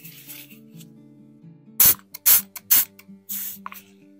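A spray bottle squirting liquid onto a coin heaped with white powder: four short, loud sprays in the second half, the last a little longer. Background music plays throughout.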